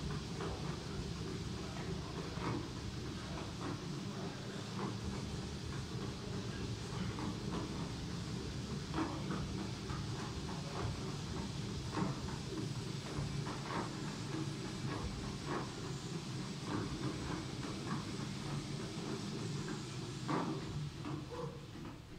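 Curved, non-motorised slat-belt treadmill rumbling and clattering steadily under a runner's footfalls, with irregular knocks as the feet land. It winds down near the end as the running stops.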